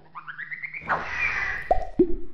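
Animated logo-reveal sound effect: a quick run of short rising chirps, a whoosh about a second in, then a falling tone ending in a plop and a hit near the end.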